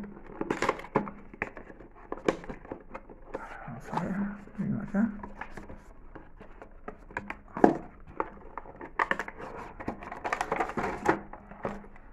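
Cardboard packaging and a clear plastic blister tray being handled and pulled open: a run of crinkles, scrapes and sharp clicks, the sharpest about seven and a half seconds in.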